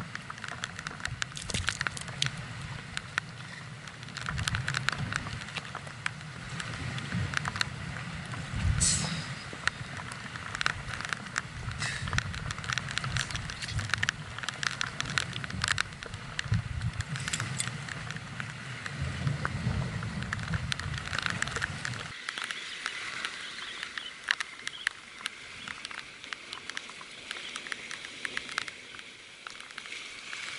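Wind rumbling on the microphone, with irregular crackling and pattering over it. The rumble drops away about two-thirds of the way through, leaving a lighter hiss.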